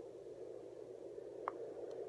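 Home fetal Doppler's speaker giving a steady static hiss, the probe not yet picking up any heartbeat. A faint tap comes about one and a half seconds in.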